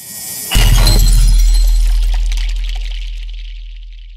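Title-card transition sound effect: a rising whoosh, then about half a second in a sudden crash with a glassy, shattering high end over a deep boom that slowly fades out over about three seconds.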